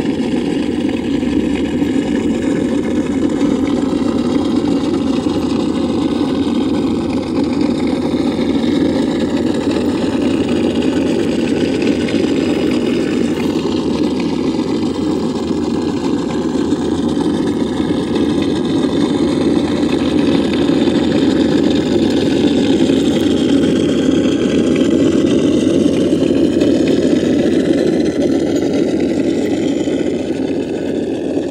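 Motor and gear drivetrain of a Traxxas TRX-4 RC crawler running steadily at crawling speed, a continuous hum.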